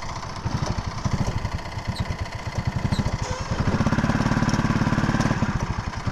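Go-kart's small single-cylinder petrol engine running, its firing beat picking up and getting louder about halfway through as the kart pulls away.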